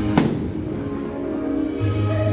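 One sharp firework bang just after the start, from an aerial shell bursting, over the show's loud music soundtrack. The music thins out in the middle and its heavy bass comes back near the end.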